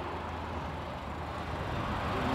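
Steady low rumble of an idling vehicle engine, with a faint even hiss.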